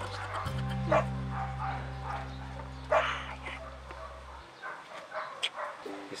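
A dog barking, with two loud barks about one and three seconds in and fainter ones near the end, over background music with held low notes that stop about two-thirds of the way through.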